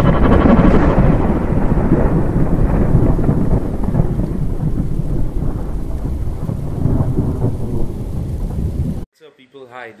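Thunderstorm sound effect: thunder rumbling over steady rain, slowly fading, then cutting off suddenly about nine seconds in.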